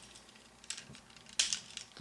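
Small plastic clicks from a Transformers Ramjet toy figure as a pegged piece is worked free from the jet's nose: a few faint ticks, with one sharper click about one and a half seconds in.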